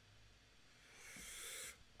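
Near silence, then a breathy hiss that swells over about a second and cuts off shortly before the end: a person sharply drawing breath through an open mouth, a gasp.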